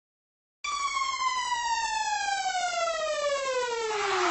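A single synthesized tone that starts about half a second in and slides steadily down in pitch: a falling sweep, or downlifter, opening a song.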